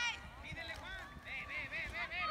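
Several voices shouting and calling out at once, without clear words.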